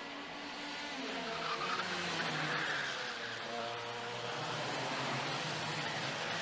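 Racing karts' IAME X30 125cc two-stroke engines running on track, their notes dropping and then rising again as the karts brake and accelerate through the corners.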